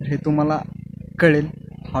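A young man speaking to the camera in two short phrases with a pause between them. A steady low hum runs underneath.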